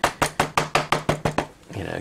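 Wood-mounted rubber stamp tapped quickly and repeatedly against an ink pad to ink it up: about a dozen sharp knocks, around eight a second, over a second and a half.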